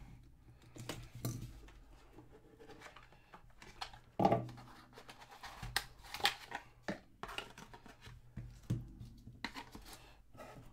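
Hands tearing the plastic wrap off a sealed cardboard trading-card box and opening it, with irregular scratching, tearing and cardboard scraping sounds. The loudest tear comes about four seconds in.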